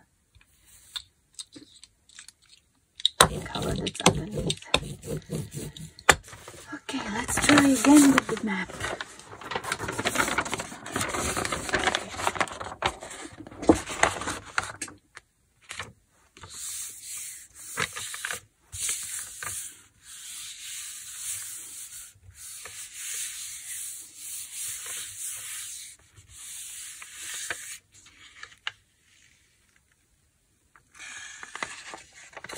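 Paper rustling and being handled, then a long run of hand strokes rubbing a road-map page pressed onto a painted gel printing plate, a soft, even scratchy swishing.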